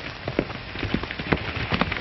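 A horse galloping: sharp hoofbeats, about three or four a second, over the steady hiss of an old film soundtrack.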